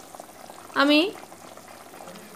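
Soya chunk kofta curry gravy bubbling at a simmer in a pan, a faint, steady fine crackle.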